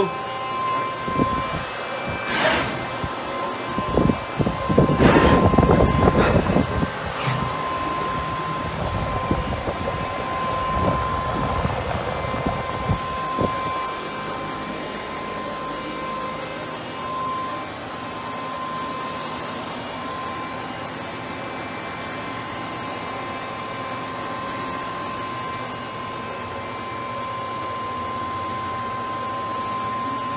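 Fanuc Robodrill Alpha T14iA CNC drilling centre running a machine cycle: a run of mechanical clunks and whirring movements through the first dozen or so seconds, loudest about five to seven seconds in. It then settles to a steady hum with a thin, constant whine.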